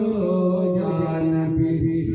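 A man's devotional chanting, amplified through a microphone and PA, holding a long drawn-out note that dips slightly in pitch just after the start and is then held steady.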